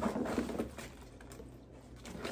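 Handling noise from a plastic food-storage container being taken out of a fabric lunch bag: small clicks and rustles, busiest in the first half-second, then fainter.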